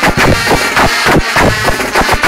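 Guggenmusik band playing loudly: sousaphones and trumpets in a brassy wall of sound over a drum kit with cymbals and a bass drum beating out a steady rhythm.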